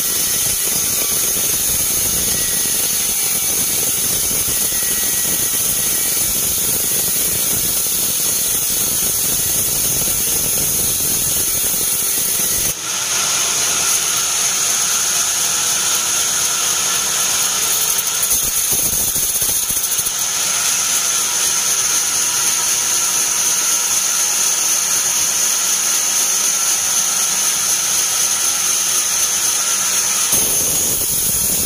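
Horizontal bandsaw mill running and cutting through a teak beam: a loud, steady machine sound with a high whine over the motor. About 13 seconds in the low rumble drops away while the high whine of the blade carries on.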